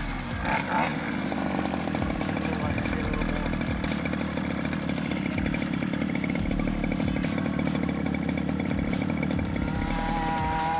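Small two-stroke petrol engine of a 1/5-scale RC car idling steadily with a fast, even buzz while it is being tuned.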